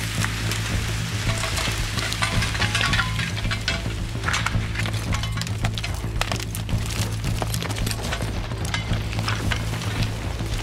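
Background music with a steady low drone, over a continuous crackling and scraping of a log being dragged by a horse team across dirt and forest debris.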